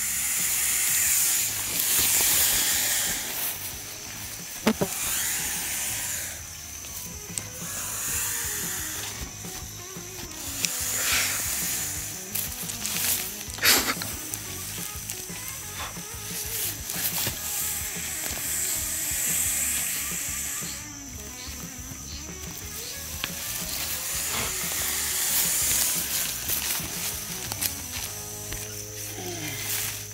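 A Burmese python hissing: long, breathy hisses repeated every few seconds while it is being caught, with a few sharp clicks of handling.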